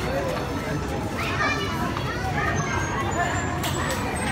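Indistinct chatter of adults and children, several voices overlapping over a low background rumble.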